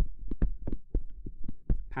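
Stylus tapping on a tablet screen while numbers are written out: a quick run of short knocks with a dull thud, about six or seven a second.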